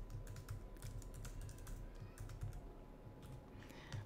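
Faint, irregular clicking of a computer keyboard being typed on.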